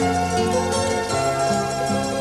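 Instrumental music: a melody of held notes over a bass line that changes note about every half second.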